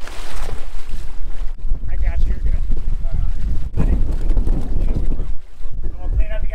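Wind buffeting the microphone, a loud low rumble that surges and eases in gusts, over water washing along the side of a moving boat's hull.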